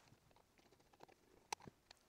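Near silence, with a few faint clicks about one and a half seconds in.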